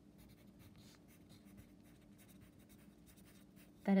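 Wooden pencil writing on a paper workbook page: a quiet run of fast, faint scratching strokes as words are written out.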